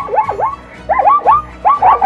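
Zebra barking calls: quick yelps that rise and fall in pitch, coming in runs of three or four, over light background music.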